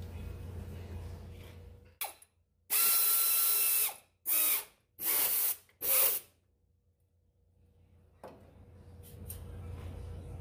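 Motorised power ratchet running a bolt into an engine frame mount: one run of about a second and a half with a steady motor whine, then three short bursts as it snugs the bolt down.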